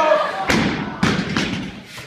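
A loaded Olympic barbell with bumper plates is dropped from overhead onto the floor after a clean and jerk. It lands with a heavy thud about half a second in, then bounces with a second thud just after a second and a couple of weaker knocks.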